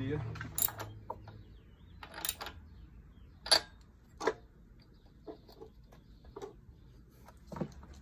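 A handful of light clicks and knocks, the loudest two about halfway through, as the spark plug wire and its rubber boot are handled and pushed onto the new spark plug of a Lawn-Boy two-stroke mower engine.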